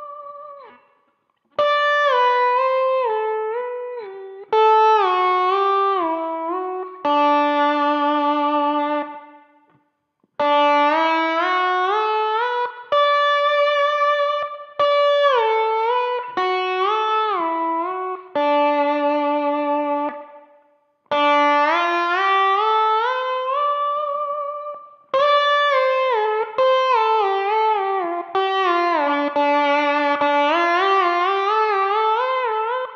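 Electric slide guitar, a D'Angelico Premier DC semi-hollow, played with a glass slide in scale runs up and down a single string: D Mixolydian, D major pentatonic, then D minor pentatonic. Each note is slid into, with glides between pitches. The runs come in phrases of a few seconds with short breaks between them, and the tone comes through overdrive and reverb pedals.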